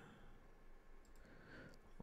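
Near silence with a few faint computer mouse clicks.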